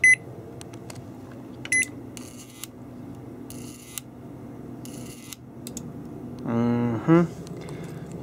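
Panasonic microwave oven control-panel keypad beeping twice as its buttons are pressed: short, high electronic beeps about two seconds apart, over a steady low hum. Three brief bursts of hiss follow.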